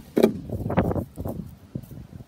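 Handling noise on a phone's microphone: a sharp knock, then about a second of bumping and rubbing as the phone is picked up and moved.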